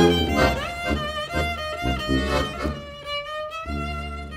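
Instrumental tango passage with no singing: a violin melody with sliding notes over a rhythmic accompaniment and bass. Near the end the rhythmic strokes drop away, leaving a held melody note over a low bass.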